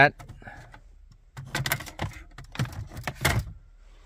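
Plastic dash trim bezel carrying the air vents and clock being pressed back into a Chrysler dashboard: a run of short clicks and knocks over about two seconds, starting a second or so in.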